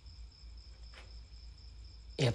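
Faint, steady chirping of crickets over a low rumble, with one faint click about halfway through.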